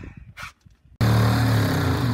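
Handheld power saw cutting into an old hot tub's shell: after a near-quiet moment, the saw's motor starts abruptly about halfway in and runs steadily.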